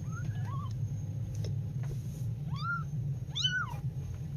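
Very young kittens mewing: a couple of faint, high chirps at the start, then two louder high-pitched mews about a second apart in the second half. A steady low hum runs underneath.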